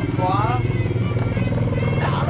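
Ringside music for a Kun Khmer bout: a reedy wind melody gliding up and down over a steady droning, pulsing accompaniment.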